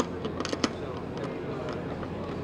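A few sharp metallic clicks and knocks in the first second as the antenna mount and screwdriver are worked against the aluminium antenna plate while the mount is tightened, over a steady murmur of crowd chatter.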